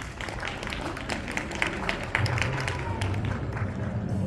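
Scattered audience clapping, with crowd voices underneath; a low steady tone comes in about halfway through.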